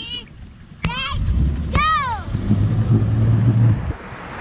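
Motorboat engine opening up to tow a skier: a loud low rumble starting about a second in and running steadily until just before the end. Three high rising-and-falling yells sound over it near the start.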